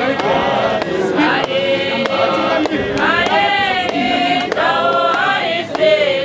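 A church congregation singing together, many voices holding and bending the same sung lines, with short sharp percussive hits scattered through the singing.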